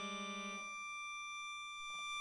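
Piano accordion holding a sustained chord of high notes; a lower, quickly pulsing note stops about half a second in, leaving the high notes sounding on.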